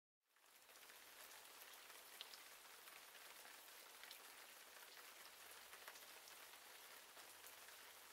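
Near silence: a faint, even hiss with scattered tiny crackles, one slightly louder about two seconds in.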